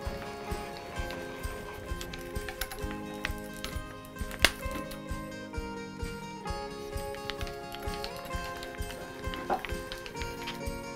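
Background music over a steady run of sharp clicks, about two or three a second, with one louder click about halfway through, from boring into a hardwood block with an auger bit turned in a hand brace.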